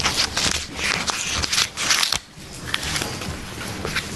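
Paper rustling and crinkling as sheets of notes are handled, with small clicks, stopping abruptly a little after two seconds in; fainter clicks and rustles follow.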